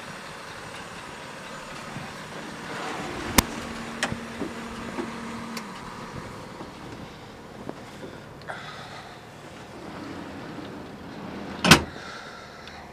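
A person climbing the steps into a parked tool truck over a steady background rumble, with a sharp click about three and a half seconds in and a louder knock near the end, typical of door and step hardware.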